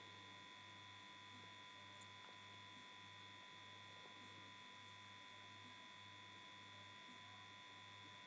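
Near silence: faint steady electrical hum with thin high tones, the low hum pulsing a little under twice a second.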